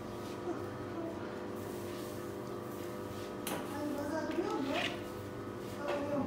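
Faint background talk over a steady hum, with a few light knocks, the clearest about three and a half seconds in.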